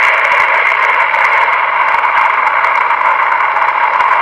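Loud, steady static hiss, like an untuned radio, holding level without a break.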